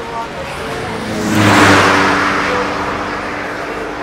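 A car engine swells to its loudest about one and a half seconds in, then slowly fades away, like a vehicle revving or driving close past.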